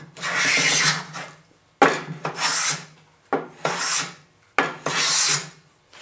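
A homemade wooden jack plane with an A2 steel blade making four strokes along a cherry board, each about a second long and starting sharply as the blade bites. The plane is set for a light cut and takes shavings a few thousandths of an inch thick.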